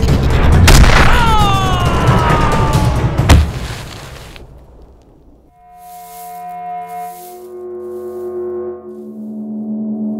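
Action-film soundtrack: loud dramatic music with sharp hit effects and a falling swoosh in the first few seconds, fading away around four to five seconds in. Then a quieter passage of held, sustained music notes.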